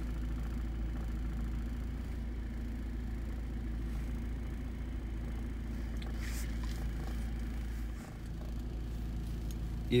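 UAZ Patriot's engine idling, a steady low hum heard from inside the cabin. A faint rustle of handling comes about six seconds in.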